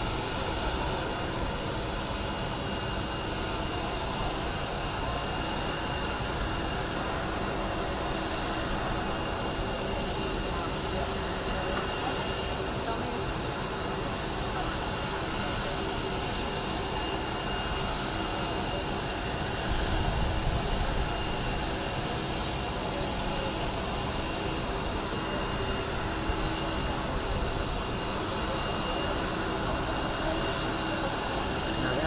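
Steady, high-pitched jet turbine whine with a lower hum underneath from a parked Boeing 747 (the VC-25A Air Force One), running at idle on the ramp.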